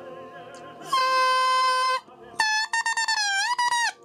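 An oboe reed blown on its own to make it crow, twice: a bright, buzzy, steady tone of about a second that cuts off sharply, then a second crow of about a second and a half that sags and lifts in pitch near the end. The reed crows flat, short of the C it is meant to reach. Classical singing from a recording plays faintly at the start.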